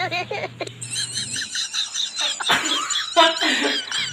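People laughing, with high-pitched squealing giggles in the first half and a single sharp cough-like burst about halfway through.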